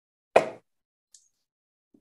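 A single gavel strike, a sharp knock with a brief ringing decay, rapping the meeting to order.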